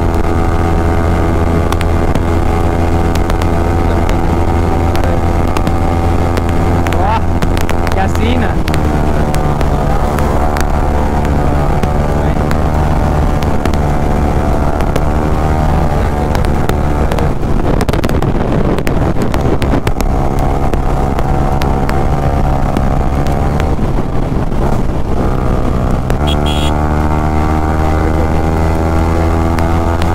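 Sport motorcycle's engine running at steady high revs at highway speed, heard from the rider's seat with wind rushing past the microphone. The engine note holds steady for long stretches and shifts a few times, with a rougher, noisier stretch in the middle.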